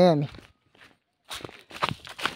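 Footsteps on a dirt trail through undergrowth: a few irregular steps starting near the end, after a short spoken word at the start.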